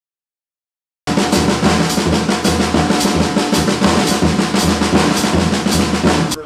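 Drum kit played in a fast, busy pattern of snare, tom and bass drum strokes under Zildjian cymbals. It starts suddenly about a second in and cuts off abruptly at the end.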